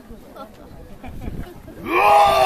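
Faint crowd murmur in a short lull, then near the end a costumed oni performer starts a loud, long held roar that rises in pitch before holding.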